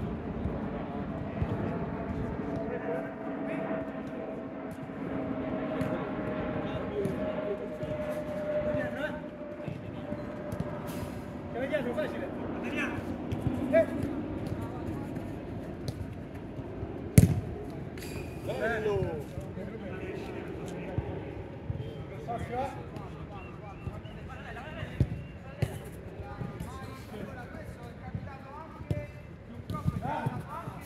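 Players' voices and calls on an outdoor five-a-side football pitch, with one sharp thud of a football being struck about 17 seconds in, the loudest sound. A steady hum slowly falls in pitch through the first ten seconds.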